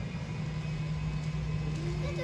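A steady low mechanical hum with faint background voices starting near the end.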